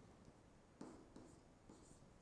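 Faint handwriting with a stylus on a tablet screen: a few short, soft taps and strokes from about a second in.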